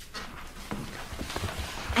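A few soft knocks or taps over quiet room tone.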